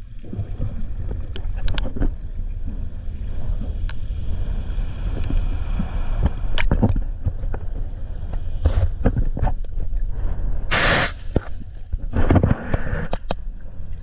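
Water moving over an underwater camera's microphone: a steady low rushing noise with scattered clicks and knocks. A short loud burst of rushing, bubbling noise about eleven seconds in, and more churning just after.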